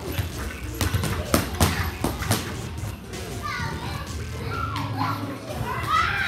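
Gloved punches smacking pads in a quick series of about six hits in the first two and a half seconds, then high children's voices calling out in the background.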